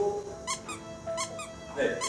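Shoe soles squeaking on a dance studio floor as dancers step and turn: about five short, high squeaks spread through the two seconds.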